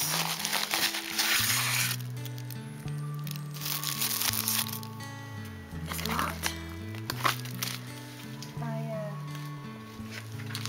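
Background music with slow, held low notes, over the crinkling of a padded plastic mailer and a tissue-paper-wrapped package being handled, loudest in the first two seconds and again around four seconds in.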